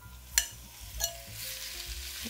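Seasoned chicken breast pieces hitting hot olive oil in a shallow enamelled Dutch oven and starting to sizzle, the hiss building from about a second in. Two sharp clinks come from a utensil scraping the chicken out of a ceramic bowl.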